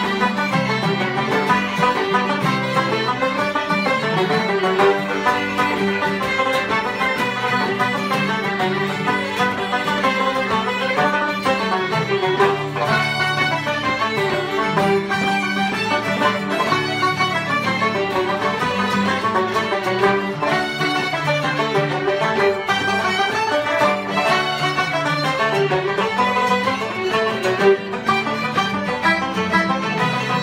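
Irish traditional dance tune played by fiddles over a strummed acoustic guitar, running on steadily with no pause.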